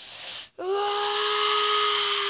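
A person's voice: a breathy rush of air, then about half a second in a long wail held steady on one pitch.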